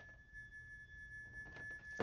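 A faint, steady high-pitched tone held at one pitch over near-quiet room tone.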